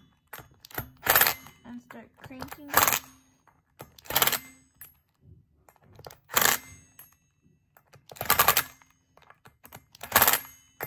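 Impact driver hammering in short bursts, five of them a second or two apart, as disc brake rotor bolts are run down a little at a time in a star pattern.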